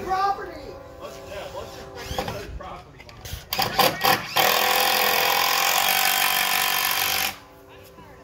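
A power tool working on the wooden fence: a few short bursts, then a loud steady run of about three seconds that cuts off suddenly near the end.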